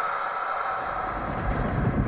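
Steady rushing wind-and-rain ambience with a faint high held tone.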